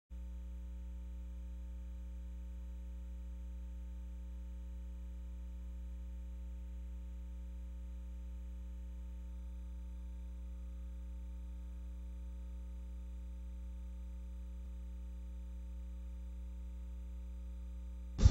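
A steady low electrical hum with a row of fainter overtones above it, unchanging throughout.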